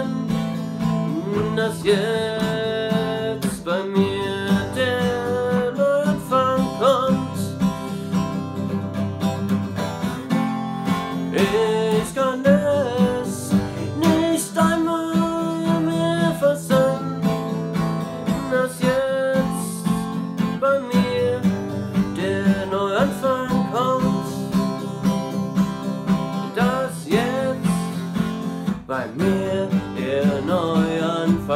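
Steel-string acoustic guitar strummed in a steady rhythm, with a man singing over it.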